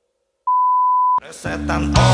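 A single steady electronic beep, one high pure tone lasting under a second, cut off abruptly by the start of loud rock music for the end screen.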